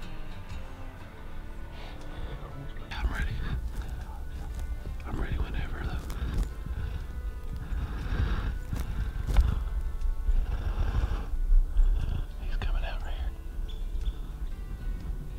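Hushed, whispered voices starting about three seconds in, over background music and a low rumble.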